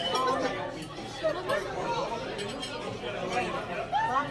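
Several people talking at once around a dining table, indistinct chatter, with a few faint clinks of tableware.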